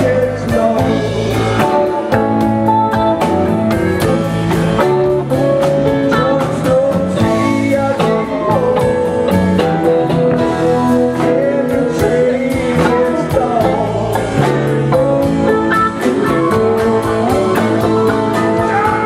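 Live rock band playing: electric guitars, drums and keyboards, over a steady drum beat.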